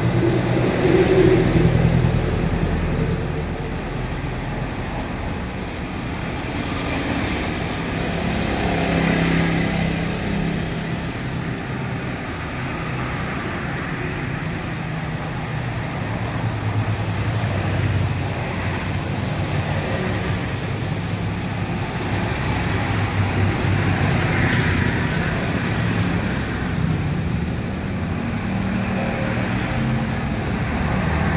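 Steady hum of motor vehicle engines, swelling and fading as traffic passes.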